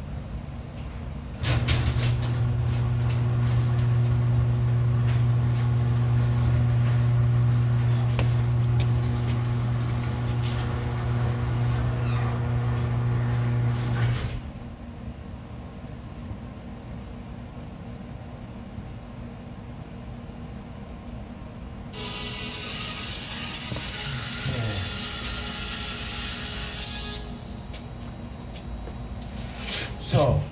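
A machine runs with a loud, steady hum for about thirteen seconds and stops abruptly. Later a high hissing noise comes in for about five seconds.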